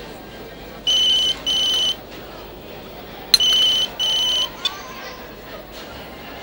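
Mobile phone ringing with an electronic ring tone: two double-beep rings, one about a second in and one just past three seconds, each made of two short high beeps.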